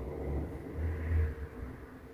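A low rumble that swells about a second in and then fades, with a faint hiss above it.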